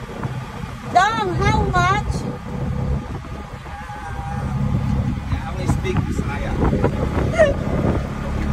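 Auto-rickshaw engine running steadily under way, heard from inside the cab with road and ride noise. About one to two seconds in there is a short wavering, pitched voice-like call.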